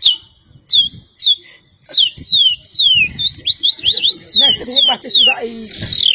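A man imitating the song of a curió (lesser seed-finch) with his mouth: high whistled notes that each sweep sharply downward, a few spaced ones at first, then a quick run of them for several seconds. Voices come in underneath near the end.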